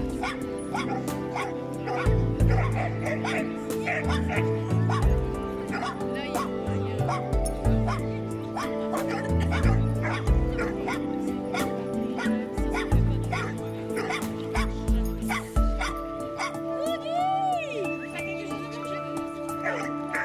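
Background music, with dogs barking and yipping as they play.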